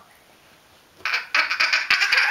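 A young child's voice making short, harsh, squawking vocal bursts, starting about a second in after a moment of quiet.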